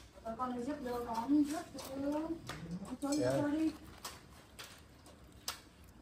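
A person talking for about three and a half seconds, then soft scattered crackles of paper wrapping being pulled open around a roast bird.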